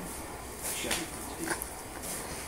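A small dog whimpering softly in a few short sounds, the last about a second and a half in.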